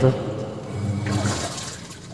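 Water running and trickling inside a washing machine, a steady wash of sound that fades away toward the end.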